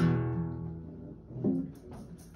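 Guitar struck once and left ringing, dying away over about a second, then struck again, more briefly, about one and a half seconds in.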